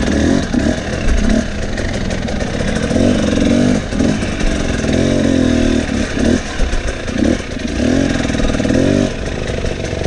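Dirt bike engine revving in short bursts as the throttle is worked on a rough trail, its pitch climbing and dropping again about once a second, with the bike clattering over the ground. Near the end the revs settle lower.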